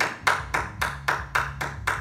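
One person clapping hands in a steady rhythm, about four claps a second, as praise.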